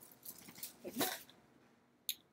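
Quiet room tone with one short, voice-like sound about a second in.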